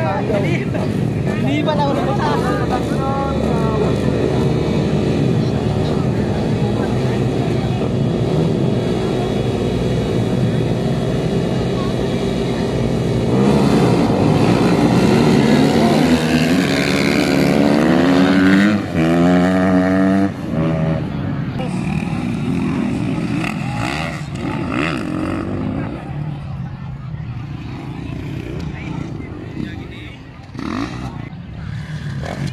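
Several motocross dirt bikes running at the start, then revving hard and accelerating away, their engine pitch rising. The engines are loudest in the middle and fade over the last ten seconds.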